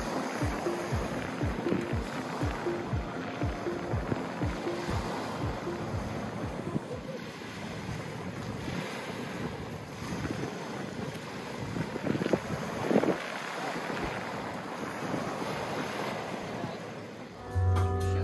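Small lake waves washing onto a pebble shore, with wind gusting on the microphone. There is a louder wash of water about twelve seconds in.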